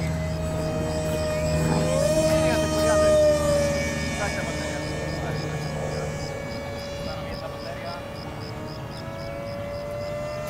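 Motor and propeller of a large radio-controlled model airplane running with a steady whine that rises in pitch about two seconds in. The whine then eases and slowly fades as the plane rolls away down the runway.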